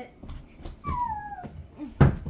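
A single high-pitched vocal cry about a second in, gliding steadily down in pitch over about half a second, with soft low bumps around it.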